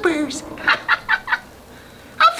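A voice sliding down at the end of a sung line, then a quick run of about five short chicken-like "bawk" clucks, followed by a brief lull.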